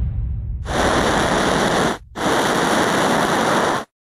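Two bursts of loud, even rushing hiss, a sound effect of spacecraft thrusters firing as a capsule separates from its service module. The first burst lasts about a second and a quarter; after a brief break the second runs a little longer and cuts off abruptly. Before them, a low rumble dies away.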